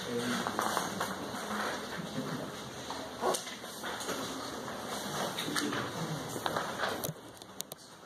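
Classroom background: faint, indistinct voices with scattered clicks and rustles, one louder click about three seconds in; the sound drops away about seven seconds in.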